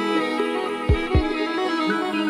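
Instrumental passage of a sad piece for violin and electronics: bowed violin playing held notes over a sustained low drone. Two deep bass thumps land about a second in, a quarter of a second apart.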